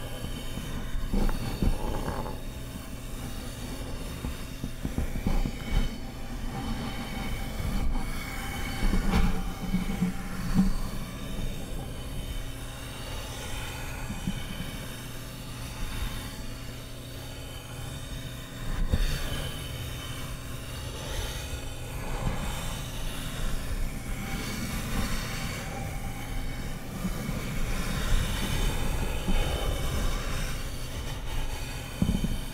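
A soft brush stroked across the surface of a large white sphere, scratchy swishes that swell and fade every few seconds, over a steady low hum.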